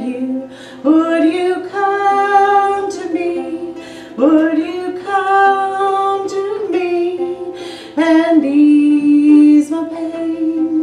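A woman singing long held notes over her own strummed ukulele, in three phrases that each open with an upward slide in pitch.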